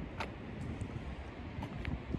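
Wind buffeting the microphone: a low, uneven rumble, with a few faint, brief high ticks over it.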